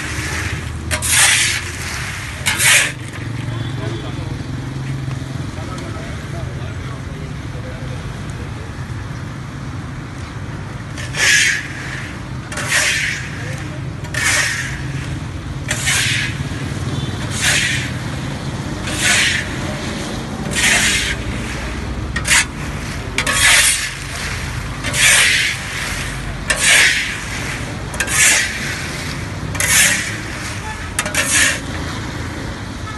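Peanuts and hot sand being stirred in a large metal wok: rasping scrapes of the scoop through the sand, one stroke about every second and a half. Three strokes come at the start, then a pause of several seconds, then the strokes resume in a steady rhythm.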